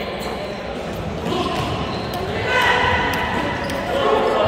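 Basketball bouncing on a gym floor during play, with players and spectators calling out, echoing in a large hall.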